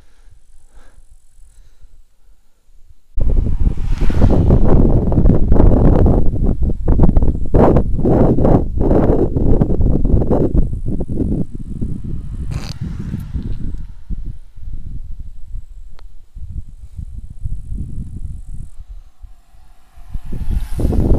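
Loud, gusty rumble of wind buffeting an action camera's microphone, starting suddenly about three seconds in and slowly easing off, with a couple of sharp clicks.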